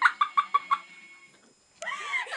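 A girl's high, staccato laugh in short clucking pulses about five a second, dying away within the first second. After a short silent gap, talking starts near the end.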